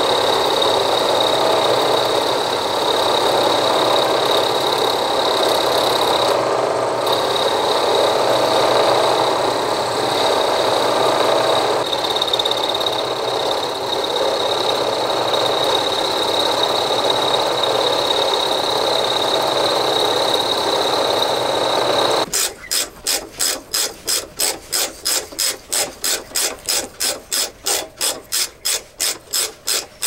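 A milling machine running an end mill into a steel block, a steady cutting noise with a high whine. It stops abruptly about 22 seconds in. A tap is then turned by hand with a tap wrench, a fast, regular rasping click of about three to four strokes a second.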